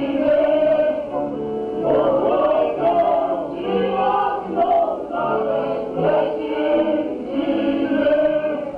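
A group of highlander folk singers, men and women, singing a folk song together in chorus, in phrases of a second or two.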